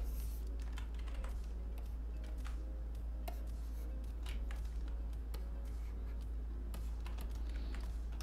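Computer keyboard keys clicking at an irregular pace, single presses and short runs, over a steady low hum.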